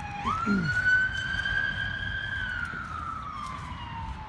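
A siren wailing: one tone that rises quickly then slowly, and sinks again over a few seconds, over a steady low rumble.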